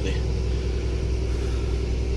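Steady low drone of engine and road noise inside the cab of a vehicle cruising on a motorway.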